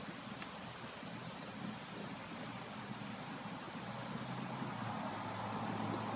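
Quiet, steady background hiss with a faint low hum: room tone, with no distinct sound events.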